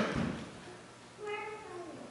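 The end of a man's cough at the very start, then about a second in a short, faint, high cry that falls in pitch.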